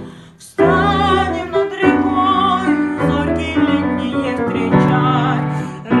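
Children's choir singing a Russian wartime song over an instrumental accompaniment, the sung notes held with vibrato. The music drops out briefly at the very start and then comes back in.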